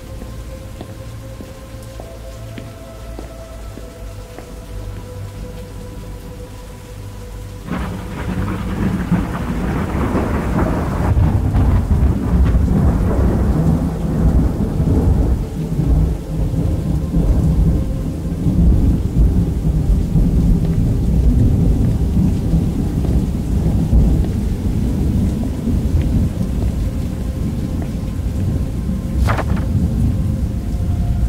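Thunderstorm: about eight seconds in, thunder breaks suddenly into a long, loud, low rolling rumble with rain, which goes on to the end. Before it, quieter rain under soft music with a few held tones.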